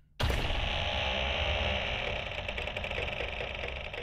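Machinery sound effect from the anime's soundtrack: a dense, rapidly ticking mechanical clatter over a low rumble, like large gears turning. It starts abruptly just after the start and runs steadily, easing slightly near the end.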